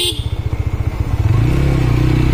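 Motorcycle engine running while the bike rides along, with a fast, even pulse from the exhaust. About a second and a half in, the note steadies into an even drone.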